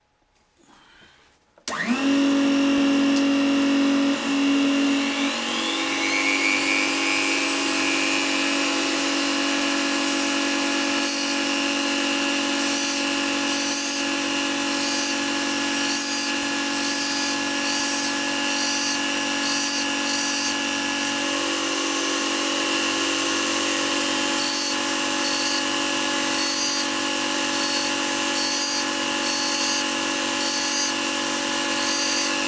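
A mini lathe and a handheld rotary tool with a grinding disc start up abruptly about two seconds in, the rotary tool's whine rising as it spins up over a few seconds. From about ten seconds on, the disc is touched on and eased off the back of the spinning metal wheel flange again and again, giving short on-off spells of grinding over the steady motor hum as the flange is ground down bit by bit.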